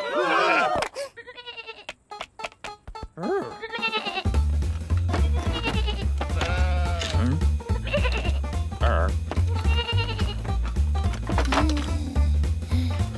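Cartoon sheep bleats and mumbled character vocal sounds, with sharp clicks during a quieter stretch around two seconds in. About four seconds in, background music with a steady pulsing bass starts and runs under the bleats.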